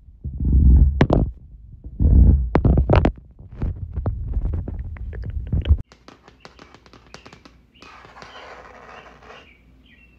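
Staged ASMR trigger sounds that the objects being touched do not make: heavy, muffled thuds mixed with clicks for about the first six seconds. After an abrupt cut comes a quick run of light, crisp taps, then a rough scratching sound lasting about a second and a half.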